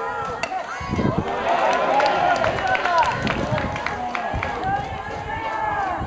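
Several voices of spectators and players calling and talking over one another at a baseball ground, with a few sharp clicks mixed in.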